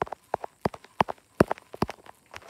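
A quick, irregular run of sharp taps and clicks, about a dozen and a half in two seconds, from fingers tapping and handling the recording device close to its microphone.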